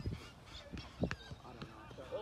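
Outdoor football training: teenage players' voices calling out, with a couple of sharp thuds of a football being struck about a second in.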